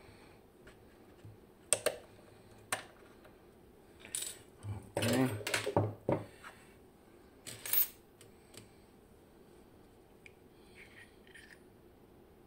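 Small metal parts of a disassembled Bowley door lock cylinder clinking and knocking as they are handled and set down: single sharp clicks about two and three seconds in, a busier run of clatter between four and six seconds, and another knock near eight seconds.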